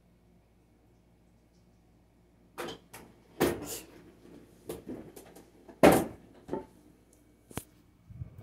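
Irregular knocks and clatters of household objects being handled, starting a couple of seconds in after near silence. There are about ten in all, the loudest about two-thirds of the way through.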